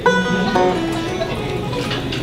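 A banjo picked between songs: a bright plucked note at the start rings out, followed by a few more single notes at changing pitches.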